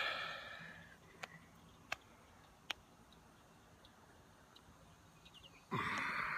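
Mostly quiet, with a few faint sharp clicks from a hand-held phone being moved, a breathy sound fading out in the first second, and a louder breathy hiss starting near the end.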